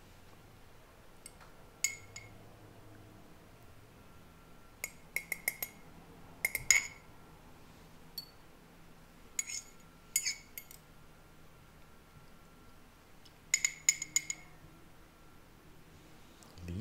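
A metal spoon clinking and scraping against the inside of a glass jar of elderberry liqueur while fishing out soaked leaves. The sound comes in short clusters of ringing taps, the loudest about six and a half seconds in, with a final quick run of taps near the end.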